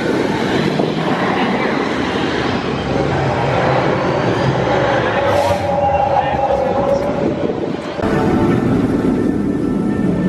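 Jurassic World VelociCoaster steel roller coaster train running on its track, mixed with crowd voices and park background music. The sound changes abruptly about eight seconds in.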